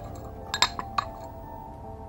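A few light clinks of glass or china tableware being handled, clustered about half a second to a second in, over soft background music.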